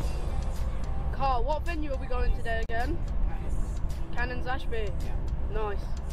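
Steady low road and engine rumble inside a moving car's cabin, with a voice and some music heard over it.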